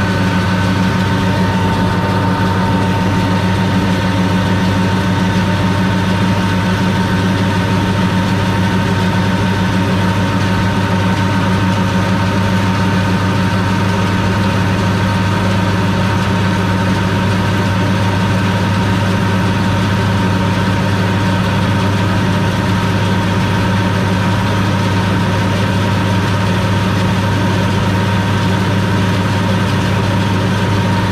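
International 1086 tractor's six-cylinder diesel engine running steadily, driving a New Idea 486 round baler through its PTO shaft while the baler ties the bale with twine. A constant drone with a faint steady high whine, no change in speed.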